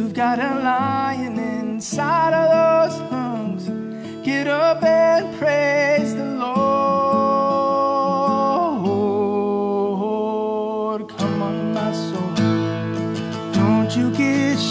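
A man singing a slow worship song to his own strummed acoustic guitar; he holds one long note about halfway through.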